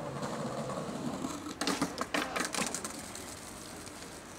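Skateboard wheels rolling over stone paving, with a cluster of sharp clacks and knocks of the board against the stone about one and a half to two and a half seconds in.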